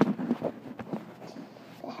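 Handling noise from a phone being moved by hand and set down: a sharp knock at the start, then low rustling and small clicks, with a few faint murmured words early on.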